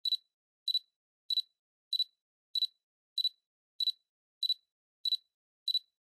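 A cricket chirping: ten short, evenly spaced high chirps, about one and a half a second, each made of two or three quick pulses, with silence between them.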